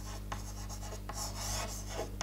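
Chalk writing on a blackboard: short scratching strokes in quick succession, with a few sharp taps as the chalk meets the board, over a steady low hum.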